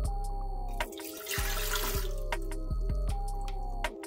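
Water poured from a plastic measuring jug into the empty non-stick pan of a bread machine, a splashing pour lasting about a second, starting about a second in. Background music with a steady bass pattern plays throughout.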